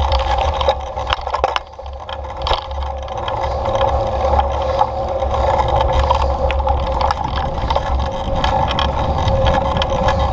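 A ride along a bumpy dirt trail: a steady hum with wind rumbling on the microphone and scattered knocks and rattles from the bumps. The sound dips briefly about two seconds in, then builds back.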